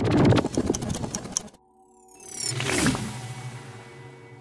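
Channel logo sting: a fast run of ratchet-like mechanical clicks for about a second and a half, then a brief drop. A swelling whoosh follows over a held musical chord and fades out, with faint falling glides at the start of the swell.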